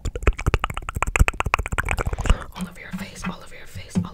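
Rapid tapping of long fingernails on a plastic foundation bottle, about ten taps a second, for the first two seconds or so, then soft whispering close to the microphone.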